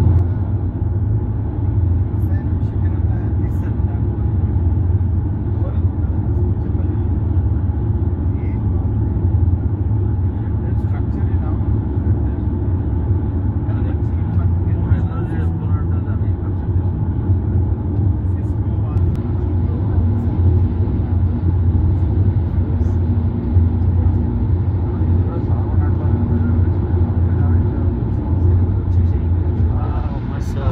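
Steady road noise inside a car's cabin at highway speed: a low drone of tyres, engine and wind that holds even throughout.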